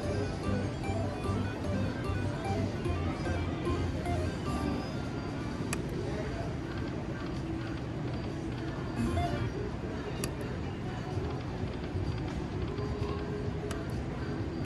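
Genghis Khan video slot machine playing its electronic jingles and reel-spin tones through several spins, over the steady noise of a casino floor with other machines and distant chatter.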